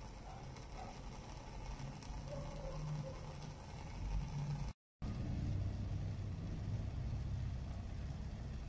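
Internal aquarium power filters running in a glass tank, a steady low hum with water churning and bubbling from the outlet jet. The sound cuts out for a moment about five seconds in, then resumes slightly louder as a second, smaller filter of the same series runs.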